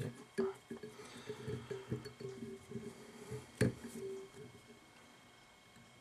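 A man's low, indistinct voice for the first four and a half seconds or so, with one sharp click about three and a half seconds in.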